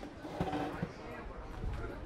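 Indistinct voices of people talking nearby, with a few low thumps of footsteps as someone walks.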